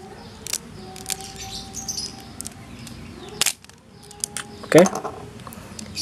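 Small plastic clicks as a Beyblade's plastic spin gear is twisted and pulled out of its ring by hand. There are a few light clicks, and the sharpest comes about halfway through.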